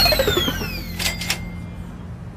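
Playful soundtrack sound effects: a falling whistle-like glide with a descending run of short notes, then two sharp clicks about a second in, trailing into a faint steady high tone.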